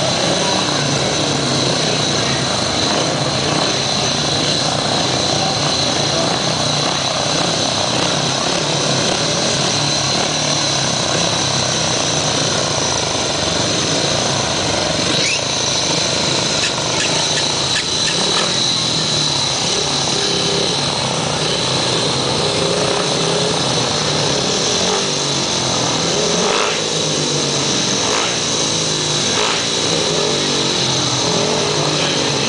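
Several speedway motorcycles' 500 cc single-cylinder methanol engines running at the start line, loud and steady, their pitch rising and falling as the riders blip the throttles.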